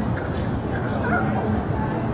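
A dog yipping and whining, several short high calls in the first half, over steady low street noise.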